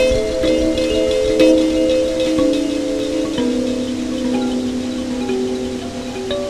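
Homemade electric kalimba in a minor key, its plucked tines fed through delay effects so each note repeats and the notes overlap into a sustained, chime-like wash. Fresh plucks come in near the start, and a few new notes enter around the middle.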